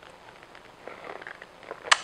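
Faint sipping from a heavy-bottomed glass tumbler, then a single sharp click near the end as the glass is set down on the countertop.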